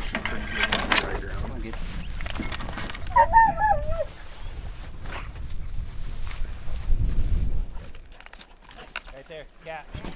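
Hunting hounds let out of a truck's aluminium dog box: knocks and clatter in the first second, then a single wavering bawl from a hound about three seconds in, over a low wind rumble on the microphone.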